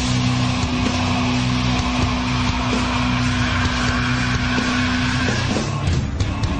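Loud instrumental stretch of a punk rock song: distorted electric guitars and drums in a dense wall of sound, with one guitar note held until near the end.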